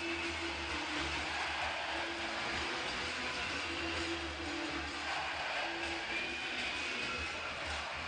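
Arena crowd cheering a home goal over celebration music from the public-address system, a held low note sounding in several stretches with a deep bass hum beneath.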